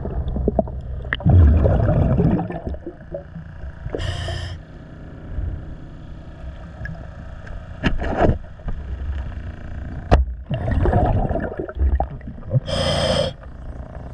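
A scuba diver's regulator breathing, heard underwater: two short hissing inhales, about four seconds in and near the end, with gurgling bursts of exhaled bubbles between them.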